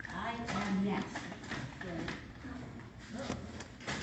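Indistinct voices talking quietly in a room, with no words clear enough to make out.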